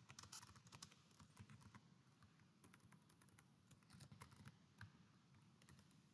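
Faint typing on a computer keyboard: an irregular run of soft keystroke clicks.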